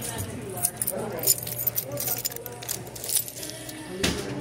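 Light metallic jingling and clinking, close and irregular, over a background of indistinct restaurant chatter.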